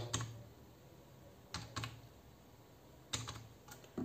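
A few faint keystrokes on a computer keyboard as the digits of a six-digit verification code are typed: two clicks near the middle, then a short cluster of three or four near the end.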